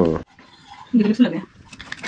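Mostly speech: a short spoken phrase about a second in, with a quiet stretch before it and a few faint clicks near the end.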